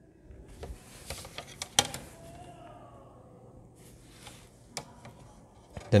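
Pencil scratching along the edge of a plastic set square on drawing paper, with short clicks and taps as the set square is shifted; the sharpest click comes about two seconds in.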